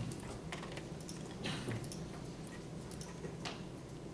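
Laptop keyboard typing: a few irregular key taps and clicks, spaced out rather than in a fast run, over the hum of a classroom.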